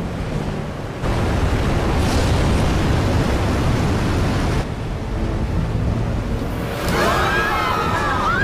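A loud, rushing roar of wind and deep rumble around a jet airliner. It jumps louder about a second in and dips briefly near the middle.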